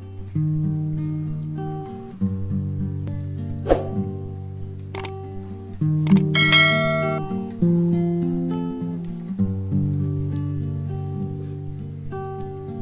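Background music of guitar with sustained chords that change every couple of seconds. About four seconds in there is a sweeping whoosh, then a click, and about six seconds in a click and a bright ringing chime, the sound effect of a subscribe-button animation.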